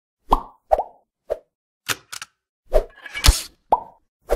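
A string of about eight short plop and pop sound effects, irregularly spaced, several with a quick drop in pitch, from an animated logo intro.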